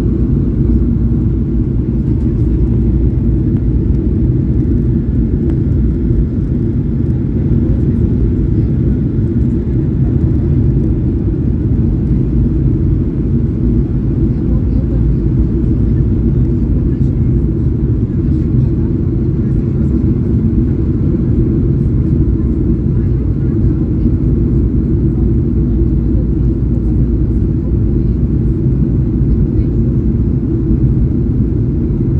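Steady cabin noise of a Boeing 737-800 on approach, heard from a seat beside the wing: the low drone of its CFM56 turbofan engines mixed with airflow over the fuselage, unchanging throughout.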